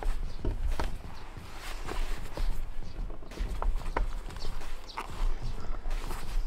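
Gear being packed by hand into a fabric sling bag: scattered light knocks and clicks of items going in, with rustling of the bag's fabric.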